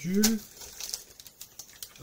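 A short spoken syllable, then a small plastic parts packet crinkling and rustling as it is handled, with a few light ticks.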